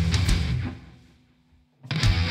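Rock band with drum kit playing, then stopping dead about half a second in, leaving a fading low note. The full band comes back in just before the end.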